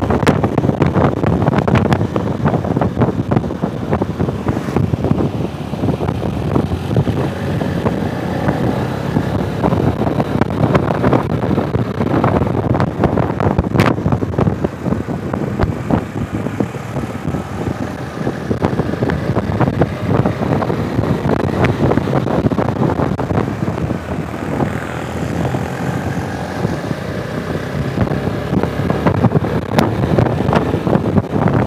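Motorcycle being ridden at road speed: wind buffeting the microphone over the steady drone of the engine.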